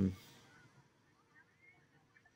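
A man's drawn-out "um" trailing off at the very start, then near silence with only faint, indistinct atmospheric sound from a turned-down TV show soundtrack.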